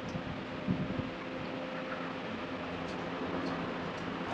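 Steady room background noise with a low mechanical hum, and a couple of soft knocks just under a second in.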